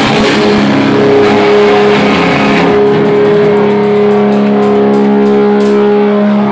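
A live heavy rock band: a distorted electric guitar chord held and ringing, with cymbal strikes in a quick, even beat joining about halfway through.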